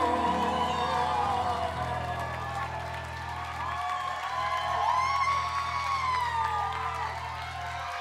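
A live band's final chord ringing out at the end of a pop song. A held sung note ends just after the start, a low line steps down into a long sustained low chord, and the audience whoops and cheers over it. The band stops sharply at the very end.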